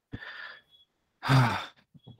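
A man sighing: a soft breathy exhale, then a longer voiced sigh about a second in.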